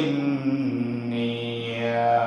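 A man's voice in the melodic, chanted delivery of an Islamic sermon (waz), drawing out one long low note after a falling phrase.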